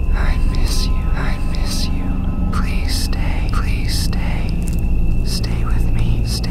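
Eerie horror sound design: breathy whispering and hissing voices, coming about once a second, over a steady low drone and a thin sustained high tone.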